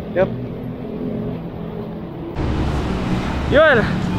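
A low steady rumble that becomes louder about two and a half seconds in, with a man's voice saying "yo" near the end.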